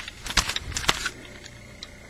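Handling noise: a few sharp clicks and knocks in the first second, the two loudest about half a second apart, then a faint tick near the end.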